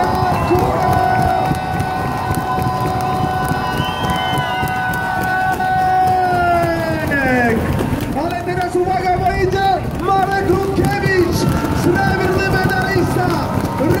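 An announcer's amplified voice holding one long drawn-out shout for about seven seconds, its pitch dropping away sharply at the end, then shorter shouted calls, over the noise of a cheering roadside crowd.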